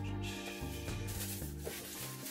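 Paper and cardboard packaging rustling and rubbing as it is handled by hand, over background music.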